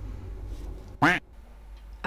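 A single short, loud squawk with a bending pitch about a second in, over a low steady hum.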